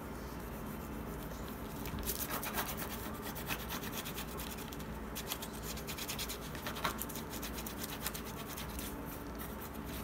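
Bone folder scraping and rubbing along glued paper over a cardboard cover edge, pressing it down in a run of short strokes that come thickest about two seconds in and again near the seven-second mark.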